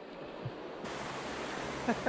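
Steady rushing of creek water, an even noise that suddenly turns brighter and fuller a little under a second in; a voice starts briefly near the end.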